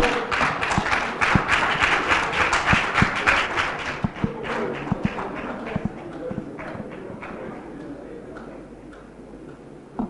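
Audience applauding at the end of a speech: loud for the first four seconds, then dying away over the next few seconds, with a few low thumps.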